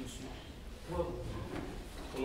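A man speaking into a microphone in a large room, in a slow conversational pace with short pauses.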